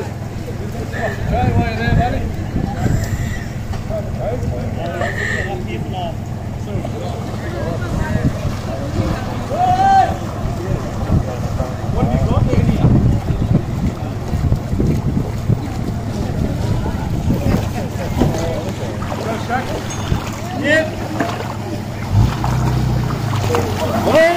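A low, steady outdoor rumble with faint scattered voices of onlookers chatting in the background.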